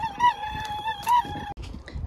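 Squeaky wheelbarrow wheel being pushed: a steady high squeal whose pitch rises briefly about twice a second, stopping about one and a half seconds in.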